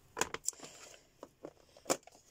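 Small clear plastic storage tubs and a pad of cards being handled and set down on a cutting mat: about half a dozen light knocks and clicks, the loudest just before the end.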